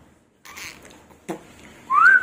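A short rising whistle near the end, after a light click about a second in.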